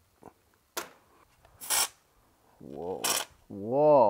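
A man's voice making two drawn-out, wordless calls in the second half, with two short hissing bursts and a click before them.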